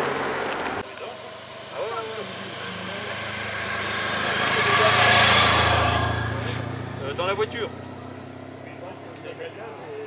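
A motor vehicle passing by: its engine and tyre sound swells to a peak about five seconds in and fades away over a couple of seconds. Short snatches of spectators' voices come before and after it.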